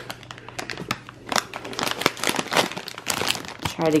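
Crinkling of a plastic-lined potato chip bag being handled and turned in the hand, a run of irregular crackles.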